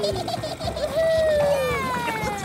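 Cartoon sound effects: long, smooth, descending whistle-like tones, one fading just after the start and another sliding down from about a second in, as characters come down the spiral ramp of a toy spinning-top craft.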